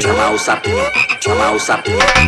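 Rock doido electronic dance track in a brief breakdown: the heavy bass drops back and a short rising chirp-like sample repeats about twice a second over lighter beats. Full bass returns just after.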